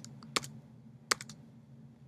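A few light, sharp clicks from someone working a computer: a pair about half a second in and a quick run of three or four just after one second. A faint steady low hum sits underneath.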